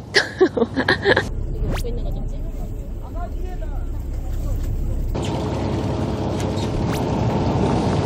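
Steady low rumble of wind and boat noise on the deck of a fishing boat, after a few short bursts of voices at the start. About five seconds in the noise changes to a broader, brighter hiss.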